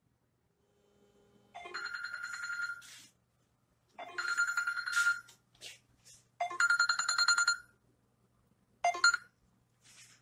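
Smartphone ringing with a trilling bell-style ringtone: three rings of about a second each, then a short fourth ring cut off as the call is answered.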